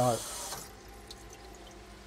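Kitchen tap water running onto soaked dried ingredients in a plastic colander, shut off about half a second in.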